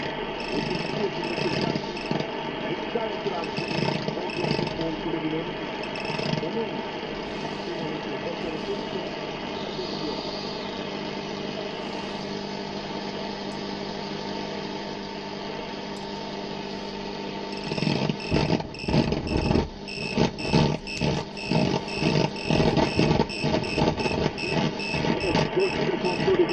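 Shortwave radio reception from a one-tube 6J1 SDR receiver running on about 3 V, with modest results: steady static hiss with several steady whistling tones. About 18 seconds in, a voice signal comes through, choppy and fading.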